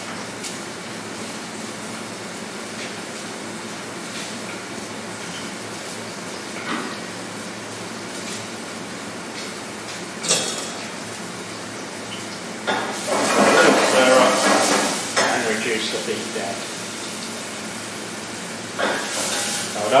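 Chopped onions and garlic sizzling in hot olive oil in a saucepan, a steady hiss with a few utensil clinks and a louder stretch of sizzle and clatter about two-thirds of the way in.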